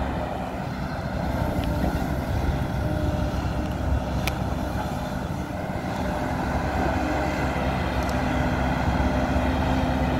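Hidromek hydraulic crawler excavator running under load while digging: a steady diesel engine hum with the hiss and whine of the hydraulics. A single sharp knock about four seconds in, with a couple of fainter ticks around it.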